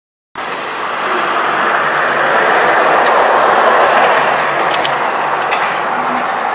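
Water falling in a tiered courtyard fountain, a steady rushing splash that cuts in suddenly just after the start.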